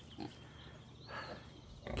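Faint sounds from a nursing sow and her newborn piglets: a short soft sound just after the start, then a faint high-pitched squeal about a second in.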